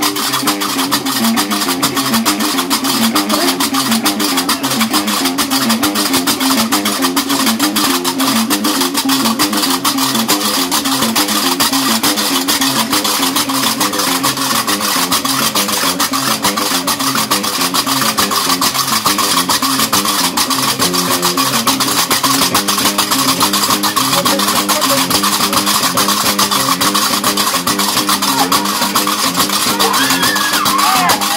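Gnawa diwan music: a guembri (three-string bass lute) plucks a repeating low riff while several pairs of iron qraqeb castanets clatter a fast, steady rhythm.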